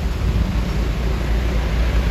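Diesel engine of a heavy semi-trailer truck running under load as it hauls a multi-axle low-bed trailer up a steep bend: a steady, deep rumble.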